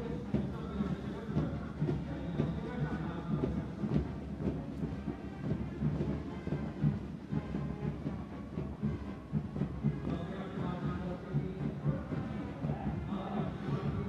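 A military brass band playing a march, with the rhythmic footfalls of a marching contingent's boots on the road.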